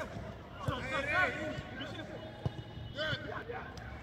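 Footballers shouting short calls to one another, with two sharp thuds of a football being kicked, once under a second in and again past halfway.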